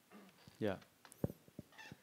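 A man says "yeah" once with a falling pitch. A few sharp knocks follow, the first and loudest just over a second in and two smaller ones after it.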